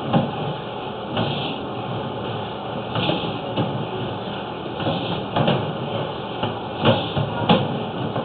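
Sewer inspection camera push cable being drawn back through a clay sewer line. There is a steady rushing noise with a handful of short knocks scattered through it.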